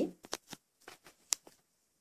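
Handling noise: a string of short rustles and light clicks, the sharpest a little past a second in.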